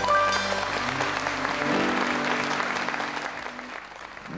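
A song ends on a held chord as a studio audience applauds. The applause fades away near the end.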